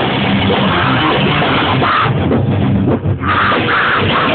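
Live rock band playing loud, with electric guitar and drums, and a brief break in the sound about three seconds in.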